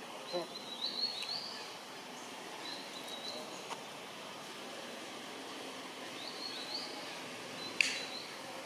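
Outdoor woodland ambience with a bird giving several short, high, rising chirps, and a single sharp click near the end.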